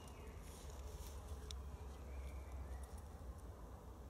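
Faint outdoor ambience: a steady low rumble with scattered light rustles and small clicks, the loudest rustle about half a second to a second in.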